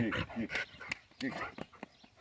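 German shepherd–wolf mix dog in an excited greeting, giving short faint whines and panting, with a few soft scuffs as it jumps about on dirt.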